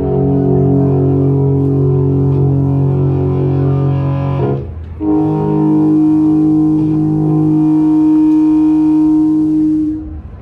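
Amplified electric guitar holding two long sustained notes during a solo: one rings for about four and a half seconds, then after a short break a second, higher note is held for about five seconds and cut off suddenly.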